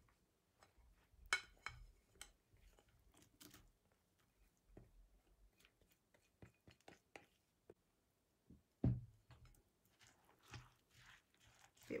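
Grated pumpkin scraped with a spatula out of a glass bowl into cake batter: faint soft scraping and scattered light clicks of the spatula on the bowls. There is a sharp tap about a second in and a louder dull knock near nine seconds.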